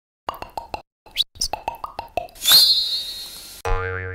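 Short synthesized intro sting: a quick run of plucky, bouncy 'plop' notes with two brief rising chirps, a bright shimmering crash about two and a half seconds in, then a held chord over a low hum near the end.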